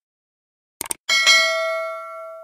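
Subscribe-button animation sound effects: a quick double mouse click, then a notification bell chime that rings out and slowly fades.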